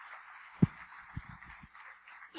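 Handling noise from a handheld microphone: one sharp thump about half a second in, then a few softer low knocks, over a steady murmur of room noise.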